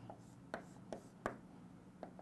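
Chalk tapping and scraping on a chalkboard as a line is drawn: three faint, short taps about a third of a second apart.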